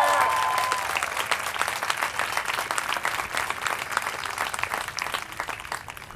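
Audience applauding, with a few cheering shouts at the start; the clapping eases off and dies away just before the end.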